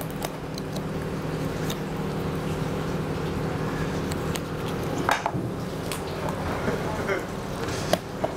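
Steady hum of commercial kitchen equipment, with faint scattered clicks of a small knife cutting through a rabbit saddle on a plastic cutting board.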